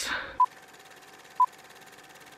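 Film countdown leader sound effect: two short beeps of the same pitch, a second apart, over a faint crackly hiss.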